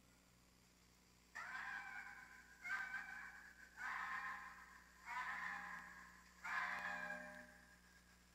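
Recorded red fox screams played through a phone's speaker: five calls about a second long each, one after another with short gaps, starting about a second in.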